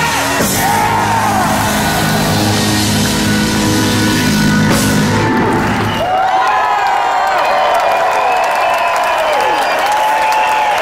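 Live blues band holding the song's final chord under the singer's voice, with two crashing drum hits. The band cuts off about six seconds in, leaving the audience cheering, whooping and clapping.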